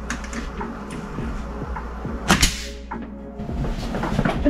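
A few light knocks and taps of wood, then a sharp double knock about two seconds in, as a wooden door and frame are handled during installation. Faint background music runs underneath.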